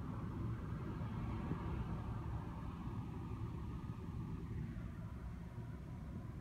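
Steady road and engine noise inside a moving taxi's cabin: an even low rumble from tyres and engine while cruising.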